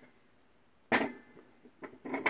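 A single sharp knock about a second in, with a short ring after it, as the brake drum with its freshly pressed-in wheel bearing is handled against the press, then a faint click near the end.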